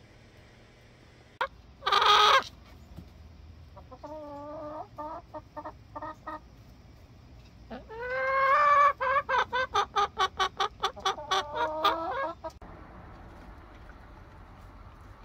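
Chickens clucking: a short harsh squawk about two seconds in and a few short clucks, then a long rising call that breaks into a rapid run of loud clucks, about five a second, stopping near the end.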